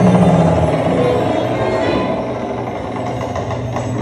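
Dark-ride vehicle rolling along its track with a steady running noise, while the ride's soundtrack music dies away in the first second or so.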